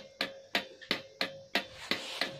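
Chaser light controller driving strings of LED jhalar lights, clicking rhythmically about three times a second as it steps through its light channels, over a faint steady hum.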